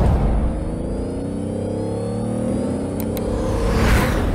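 Car engine revving sound effect over a music bed, its pitch climbing steadily as it winds up. Two quick mouse-click sound effects come about three seconds in.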